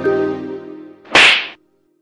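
Background music fades out. A little over a second in, a short, sharp rush of noise lasting under half a second cuts in as the loudest sound, like an editing transition effect. A faint held note lingers after it.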